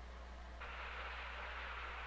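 Steady hiss over a low hum, the background noise of an old film soundtrack. About half a second in, the hiss grows louder and brighter and then holds steady.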